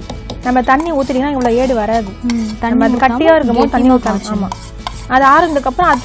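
A voice singing long, wavering notes over background music, with a steel spoon scraping and clinking against steel vessels as food is scooped into a mixer-grinder jar.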